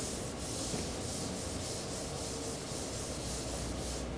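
Steady writing on a board.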